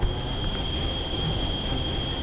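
Cartoon atomic-breath beam sound effect: a steady high whine over a rumbling hiss.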